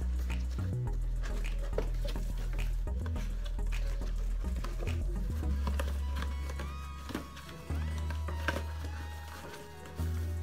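Background music with a bass line that moves between held notes and a melody coming in past the middle. A few sharp clicks over it, from paperboard boxes being handled and slotted together.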